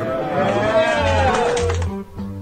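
Song with guitar and bass, a voice holding one long wavering note that breaks off near the end.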